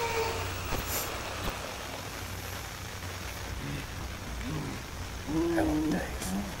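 Horror film soundtrack: a steady low rumbling ambience with a few sharp clicks in the first second and a half, then short muffled vocal sounds growing louder near the end.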